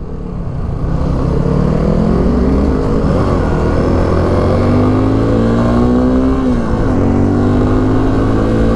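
Suzuki V-Strom 250 motorcycle engine heard from the rider's seat, its pitch climbing as it accelerates, dropping briefly about three seconds in and again near six and a half seconds, then climbing again.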